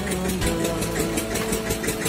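A steady mechanical drone like a small engine running, with a fast, even pulse. A few steady tones join it about half a second in.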